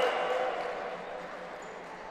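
Crowd and voices in a large gymnasium dying away over the first second after a point, then a low hall murmur.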